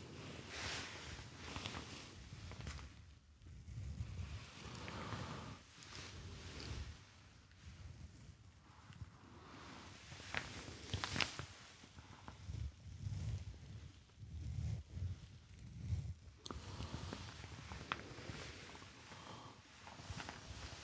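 Close-up rustling of a shirt and soft handling sounds at a binaural microphone's ears, coming in irregular bursts with soft thumps and a few light clicks.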